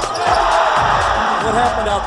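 Crowd noise in a gymnasium during a high-school basketball game, with thuds of the ball.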